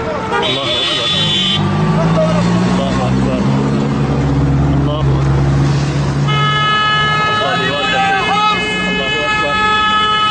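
Vehicle horns honking from a passing convoy of pickup trucks: a short high blast about half a second in, then a long steady horn blast held from about six seconds in, over the trucks' engines and shouting voices.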